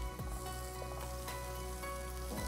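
Chopped coriander leaves sizzling in olive oil in a frying pan while being stirred with a wooden spatula, with soft background music.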